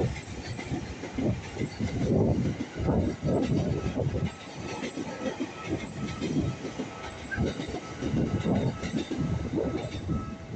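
An electric train running past on the line, its wheels clattering over the rail joints in an uneven run of low knocks and rumble.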